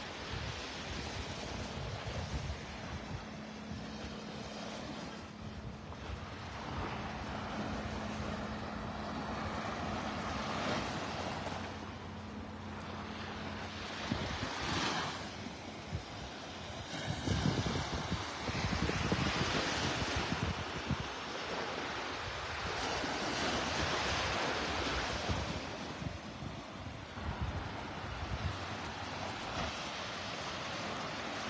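Small Gulf waves breaking and washing up on a sandy beach, the surf swelling and fading every few seconds, with wind buffeting the microphone. A faint steady hum runs through the first half.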